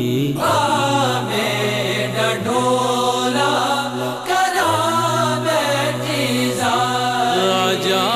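Solo voice singing long, wavering held notes of a Sufi devotional song in Punjabi/Saraiki over a steady low drone, without clear words.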